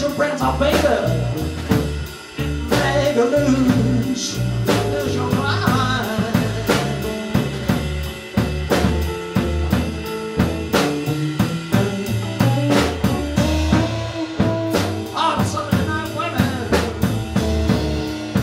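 Live electric blues trio playing electric guitar, electric bass and drum kit, an instrumental passage without vocals over a steady drum beat.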